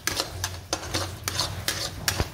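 Metal spatula stirring and scraping thick suji (semolina) halwa around a metal kadhai. The strokes are rapid and repeated, about three a second.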